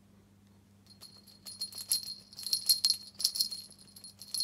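A small bell jingling in quick irregular shakes, starting about a second in, as from a bell on a cat's collar while the cat scratches her neck with a hind paw.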